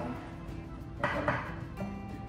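Background music playing, with a kitchen knife striking a cutting board in two quick chopping strokes about a second in.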